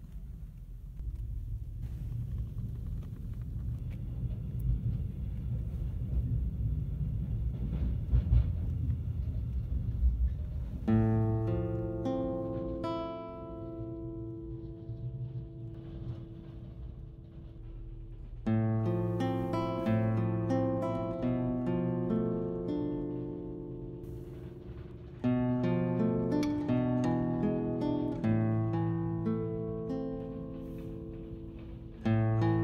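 Low rumble of a vehicle in motion, heard from inside a car, for the first ten seconds or so. Then solo guitar music, a passacaglia, comes in, played in phrases that start afresh twice.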